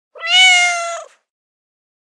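A single meow-like call, about a second long, rising slightly in pitch at the start and then held.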